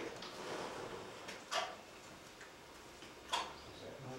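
Two sharp, short clicks about two seconds apart, like a button being pressed, over quiet room tone.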